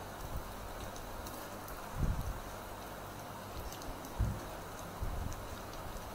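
Steady faint hiss with three soft low thumps, about two, four and five seconds in, from a hand drawing with a fine-tip pen on a paper tile resting on a table.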